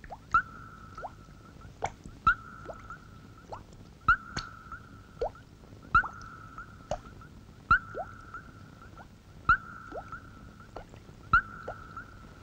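Eerie electronic sound effect on the film soundtrack: a steady high tone, with a sharp click about every two seconds and short falling blips in between.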